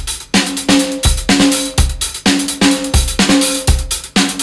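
Instrumental rock music: a band playing a loud, driving drum-kit beat, about two to three strikes a second, under a repeated low pitched note.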